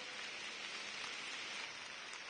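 Concert audience applauding, a steady even clapping.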